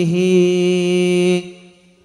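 A man's voice singing a sholawat, holding one long steady note at the end of a sung line. The note fades out over the last half second.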